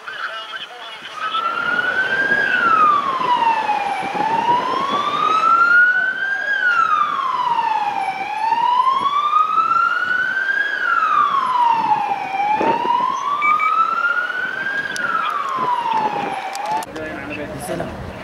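Police vehicle siren wailing, rising slowly and falling more quickly in pitch over about four cycles of roughly four seconds each. It cuts off suddenly near the end.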